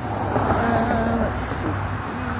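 Steady low rumble of distant road traffic under a faint voice, with a brief high hiss about one and a half seconds in.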